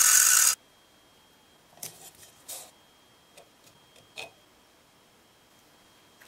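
Grinding wheel grinding down the head of a steel deck screw that is spun in a drill chuck, cutting off suddenly about half a second in. After it come a few faint, short clicks.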